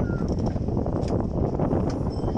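Steady noise of a crowd of people on a busy footbridge: indistinct murmur and shuffling, with no clear words.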